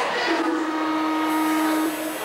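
A single steady musical note, held for about a second and a half without changing pitch, over the murmur of voices in a hall.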